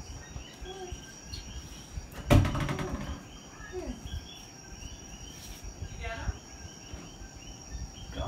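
Steady chorus of night creatures chirping, a high steady tone with rows of short repeated chirps, and a single thump about two seconds in.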